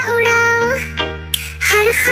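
Children's song: a high, child-like voice sings over backing music. It holds one long note, breaks briefly just past the middle, then starts a new phrase near the end.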